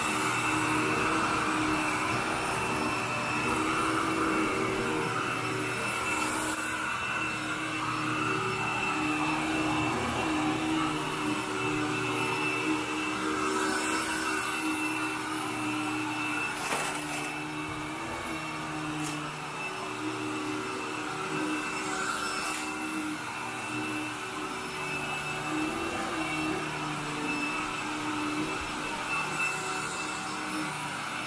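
Commercial upright vacuum running steadily as it is pushed over a dry, heavily soiled carpet. A few brief clicks sound now and then.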